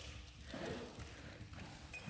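A dog's paws and claws faintly tapping on a hard sports-hall floor as it walks.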